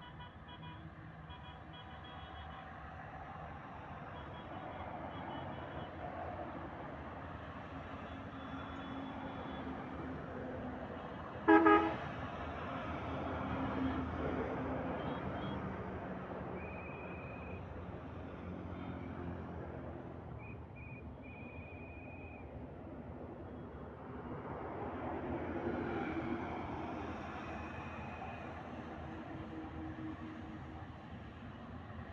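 Road traffic running past, with one short, loud horn blast about a third of the way in and a few brief high-pitched horn beeps later. The traffic noise swells twice as vehicles go by.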